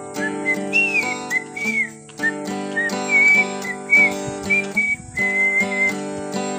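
A man whistling a melody in short phrases with little slides, over his own steadily strummed acoustic guitar.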